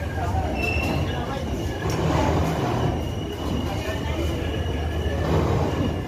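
Kamrup Express passenger coach rolling slowly alongside a platform, heard through the open sleeper window: a steady low rumble of wheels on rail with a thin, high wheel squeal starting about half a second in as the train runs into the station.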